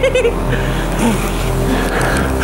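Background music with steady held synth tones that change pitch in steps, and a short whooping voice right at the start.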